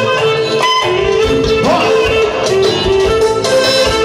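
Live band dance music: a wavering melody line over a regular bass pulse.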